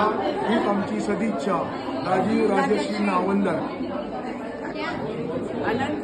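Several people's voices talking over one another, with no other sound standing out.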